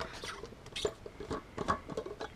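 Screw cap of a Klean Kanteen stainless steel water bottle being twisted off by hand: a run of small, scratchy clicks and scrapes from the cap and threads.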